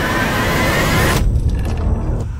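Horror-trailer sound design: a loud, dense riser of noise with climbing screeching tones builds and cuts off abruptly just over a second in, leaving a low rumble underneath.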